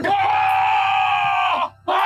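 A person screaming: one long, high scream lasting about a second and a half, then a second scream starting near the end.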